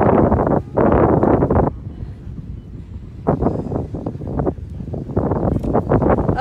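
Wind buffeting the microphone in gusts: a loud rumbling rush for the first second and a half or so, then shorter gusts later on.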